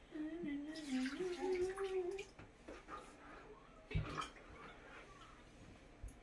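Water splashing and trickling in an infant bath tub as a child pours from a cup over a newborn. For the first two seconds a drawn-out, wavering voice sound runs over it, and there is a soft thump about four seconds in.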